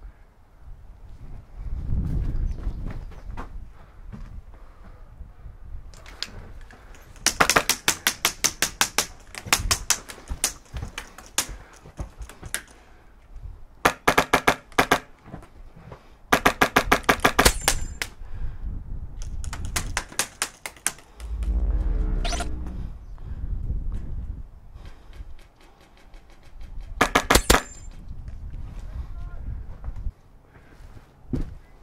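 Airsoft rifle fire in about six rapid bursts, each a quick run of sharp clacks, from a custom Polar Star LVOA, a high-pressure-air (HPA) rifle. Low rumbles of movement come between the bursts, loudest twice.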